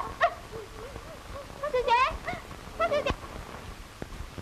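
A woman's voice in three short, distressed cries, the middle one rising in pitch, over faint film hiss.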